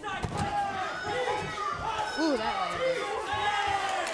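Shouting voices in an arena hall, from cageside and the crowd, during an MMA exchange, with a dull thud of a punch landing about half a second in.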